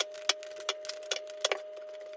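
Tarot or oracle cards being handled and laid down: an irregular run of sharp clicks and snaps, about a dozen in two seconds, over a steady faint held tone.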